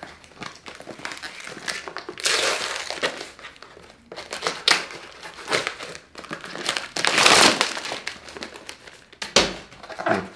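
Cardboard parcel being opened with a pocket knife: the blade scraping through packing tape and cardboard, then a plastic bag crinkling as the contents are pulled out. It comes in irregular rustling bursts with a few sharp clicks.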